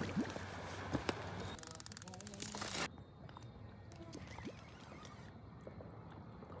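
A baitcasting reel's line-out clicker ratcheting rapidly for about a second and then cutting off suddenly: line being pulled off the reel by a fish taking the bait. Before it come a few sharp knocks.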